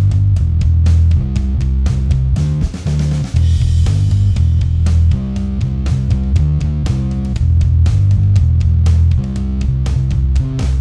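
Electric bass played through a Sinelabs Basstard fuzz pedal, a three-transistor repro of the ColorSound Bass Fuzz: a heavily fuzzed bass riff with a thick, full low end. The playing pauses briefly about three seconds in and again near the end.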